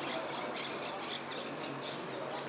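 Small birds chirping, short high calls repeating a few times a second.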